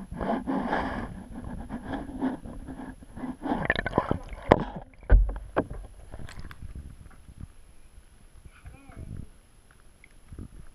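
Bathwater sloshing and gurgling around a camera moved through and below the surface of a filled tub, busiest in the first half. There is a loud low thump about five seconds in.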